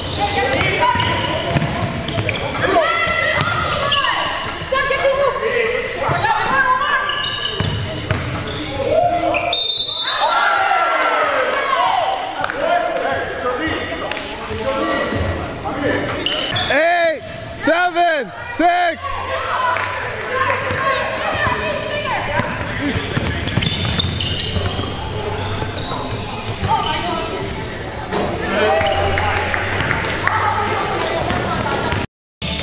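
Live gym sound of a basketball game: a basketball bouncing on the hardwood court amid indistinct players' voices, echoing in the large hall.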